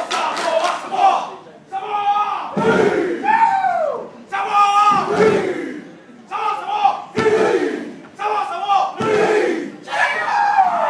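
A group of students' voices chanting and shouting a Samoan haka in loud, rhythmic phrases about a second long, separated by short breaks. A low thud marks the start of several of the phrases.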